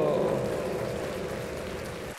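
The tail of a sung intro jingle: a held note glides slowly downward and fades out over a steady hiss.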